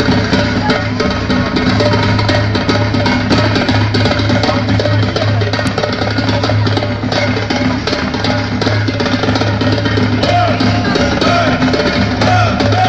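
Live band music over a stage PA: a drum kit keeps a steady beat over a heavy bass line. A singing voice comes in near the end.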